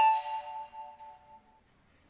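A single chime-like ding: several pitches struck at once, ringing and fading out over about a second and a half.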